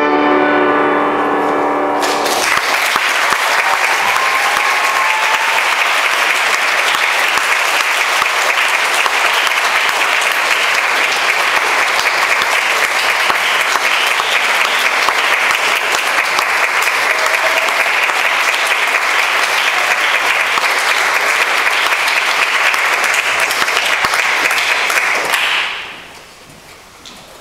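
A grand piano's final chord rings for about two seconds, then an audience applauds steadily; the applause cuts off near the end.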